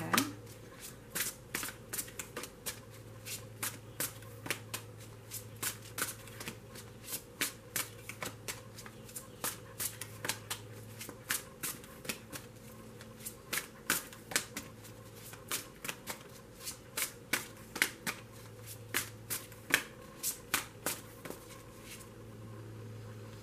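A deck of tarot cards shuffled by hand, overhand, with quick irregular flicks and slaps of the cards, about two or three a second.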